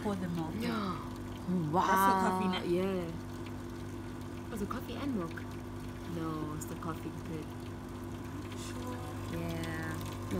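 Coffee machine dispensing into a cup: a steady pump hum with liquid pouring.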